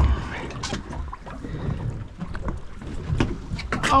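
Wind on the microphone and water sounds around a drifting boat, with scattered sharp clicks and knocks of handling on the deck and a dull low thump right at the start.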